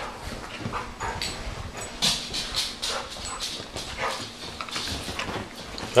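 A dachshund and a golden retriever play-wrestling on a couch: irregular scuffling and mouthing noises from the two dogs, busier from about two seconds in.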